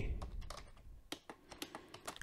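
Computer keyboard being typed on: a quiet, irregular run of key clicks.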